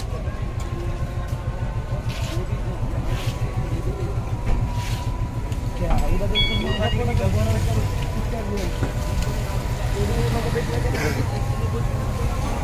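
Outdoor background noise: a steady low rumble with faint voices in the background, strongest in the second half.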